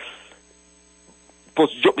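Faint steady electrical hum, a few even tones held over a low drone, in a break between a man's phrases heard over a telephone line; his speech resumes near the end.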